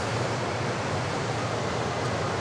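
Steady outdoor background noise: an even hiss with a low hum underneath and no distinct event.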